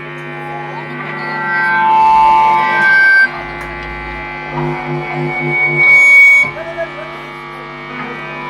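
Electric guitar through an amplifier droning: sustained notes and feedback ringing steadily. It swells over the first two seconds, wavers in a quick pulse in the middle, and gives a high whistling feedback tone near the end.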